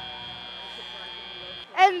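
FIRST Robotics Competition field's end-of-match buzzer: one steady high electronic tone that signals the match is over, cutting off suddenly near the end.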